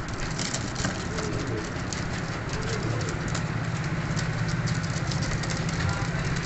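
Domestic flying pigeons in a pen, giving a few soft coos while their feet and wings scuff and tap on the litter floor, over a steady low hum.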